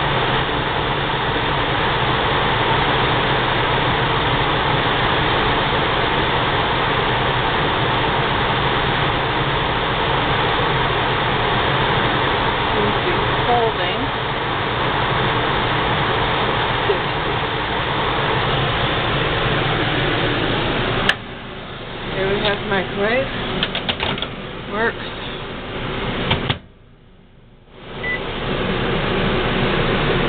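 A steady, loud rush of air from a running fan. It cuts off abruptly about two-thirds of the way through, giving way to a few clicks and handling noises and a moment of near silence, then the rush resumes near the end.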